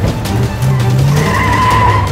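A Honda Civic coupe's engine revs up and its tyres squeal as it speeds away; the squeal starts just past halfway through and holds to the end. Music plays underneath.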